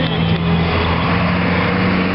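An engine running steadily, a low hum at a constant pitch.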